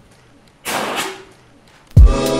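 A short whoosh of flame as paper held to a lighter flares up, lasting under a second about half a second in. A low thump follows near the end.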